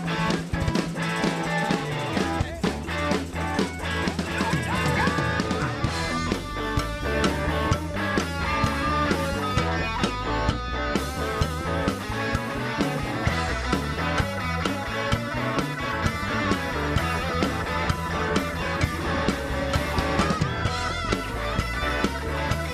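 Live rock band playing an instrumental passage: electric guitars over a drum kit, with a bass line coming in about two seconds in.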